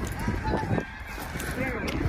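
Two short honking calls, each rising and falling in pitch, one about half a second in and a lower one near the end, over a low rumbling noise.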